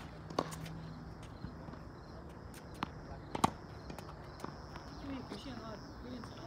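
Tennis balls being hit with rackets and bouncing on a hard court. There is a sharp pock about half a second in and a fainter one a second later, then two more strikes around three seconds in, the second of them the loudest.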